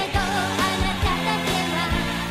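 Japanese pop song: a woman singing over a full band backing with a steady drum beat.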